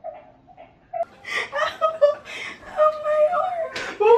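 High-pitched laughter and wordless vocal sounds in short bursts, starting about a second in after a quiet moment.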